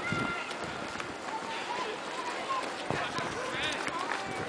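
Outdoor background of people's voices and chatter at a distance, with a few light knocks.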